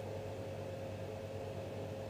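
Steady low hum and hiss with a faint constant tone above it, unchanging throughout: background room noise.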